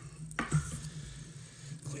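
A sharp tap about half a second in, then a soft rustling hiss for about a second: hands handling a bundle of cut elk hair and tying tools at the fly-tying bench.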